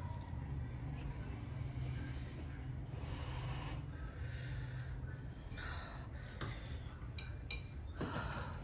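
A woman's sniffing and sharp, gasping breaths through the mouth as she reacts to the burn of very spicy ramen, the clearest about three seconds in and twice near the end, over a steady low hum.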